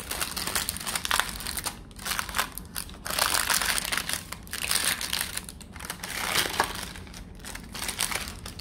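Baking parchment paper crinkling and rustling as it is handled and folded back from the sides of a freshly baked loaf cake, in irregular crackly bursts that are loudest a few seconds in.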